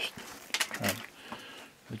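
A man's short low grunt a little under a second in, between faint handling ticks.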